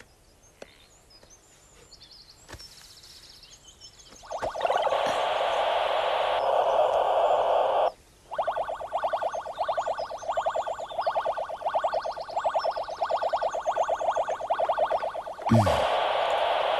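Game Boy handheld console playing electronic game sounds through its small speaker: a steady buzzing tone sets in about four seconds in, stops briefly near the eight-second mark, then gives way to a fast run of repeated beeps, several a second.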